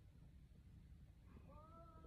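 Near silence, with a faint, short high-pitched call near the end that rises and falls in pitch.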